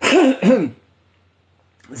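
A man clearing his throat: a short two-part 'ahem', its pitch rising and falling twice, in the first second.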